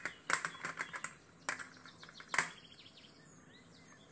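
A quick series of sharp clicks and ticks from handling at the fly-tying vise, the loudest about two and a half seconds in. Small birds chirp faintly in the background, a run of repeated chirps near the end.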